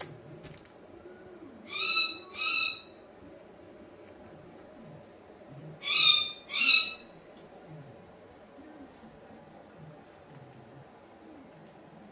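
Cockatoo calling: two short, loud, high-pitched calls in quick succession, then another pair of the same about four seconds later.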